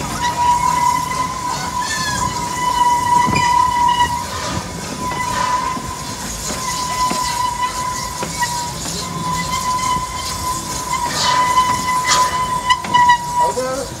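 Propane-fired park steam train running, with a steady high-pitched tone held for about thirteen seconds that stops just before the end. Under it are a running rumble and scattered clicks from the rails.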